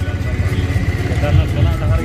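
Motorcycle riding at low speed, its engine and wind on the microphone making a steady low rumble, with faint voices of people around.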